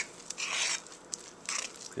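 A spoon stirring a stiff, still-floury bread dough in a mixing bowl: two scraping, crunching strokes, about half a second in and near the end, with a few light clicks between.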